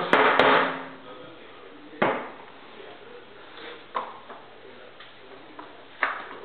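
A stack of paper rustling as it is handled and laid on the metal bed of a guillotine paper cutter, with a sharp knock about two seconds in and a softer one about four seconds in as the stack is set and pushed into place.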